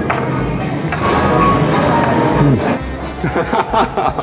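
Background music with a jingling percussion beat, with a few short bursts of voices in the second half.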